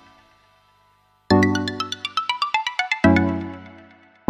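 Background music: a phrase fades out, a brief gap, then a run of quick high notes followed by a louder low chord that fades.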